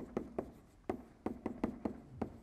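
Chalk writing on a blackboard: an irregular run of about a dozen quick taps and short strokes as the chalk forms the letters.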